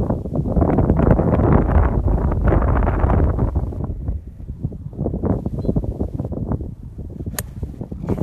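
Wind buffeting the microphone, heaviest in the first few seconds, then a single sharp crack near the end as a golf club strikes the ball off the tee.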